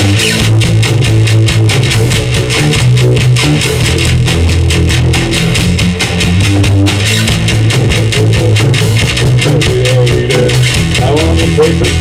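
Live rock band playing loudly in a small room: a driving bass guitar line with drums and cymbals. A voice starts singing near the end.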